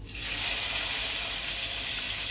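Hot oil sizzling in a frying pan on a gas stove: a steady, loud hiss that starts suddenly right at the beginning.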